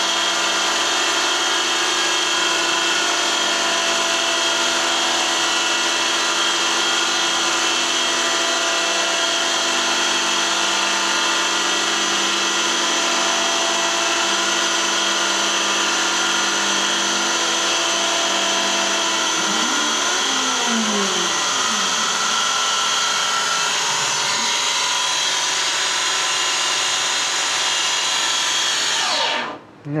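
Hercus PC200 CNC lathe running under Mach3 control, turning a shoulder on 12 mm aluminium bar: a steady machine whine made of many tones. About twenty seconds in, some of the tones sweep up and down in curves. The machine stops suddenly just before the end.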